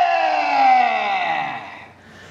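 A man's voice holding one long shouted call that falls in pitch and fades out near the end, closing a yosakoi team's dance performance.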